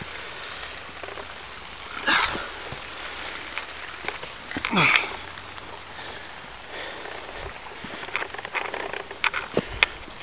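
A person breathing hard while clambering up onto a large wooden-stave water pipe: two loud, heavy exhalations about two and five seconds in, then scattered scrapes and clicks of hands and feet near the end, over a steady hiss.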